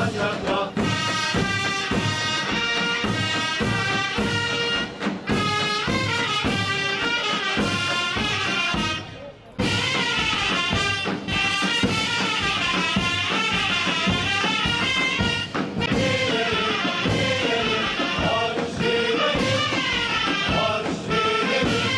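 Turkish mehter military band playing: reedy wind melody and trumpets over regular drum beats and cymbals. The band breaks off briefly about nine seconds in, then comes back in at full strength.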